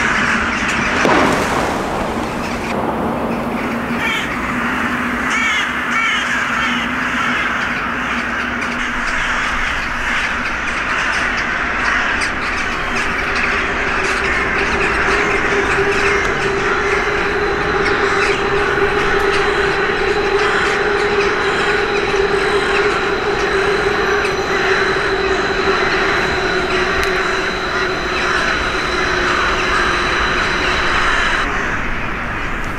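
A large roost of crows and rooks cawing all together in a dense, unbroken chorus as the flock takes off, after a single loud bang about a second in.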